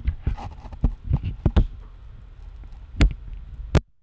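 Handling noise from a RODE VideoMic Go shotgun microphone as fingers grip and adjust its body, heard through the microphone itself at +20 dB gain. It is an uneven run of clicks and knocks, with two sharp, loud clicks about three seconds in and near the end as the gain is switched back down toward 0 dB.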